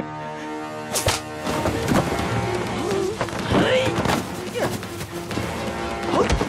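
Film fight sound under action music: a sharp hit about a second in, then a scuffle of blows with men's grunts and shouts.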